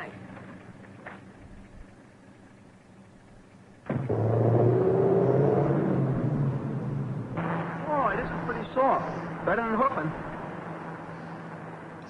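Vintage open touring car's engine running, coming in suddenly and loudly about four seconds in with a rising pitch as the car drives off, then going on more quietly.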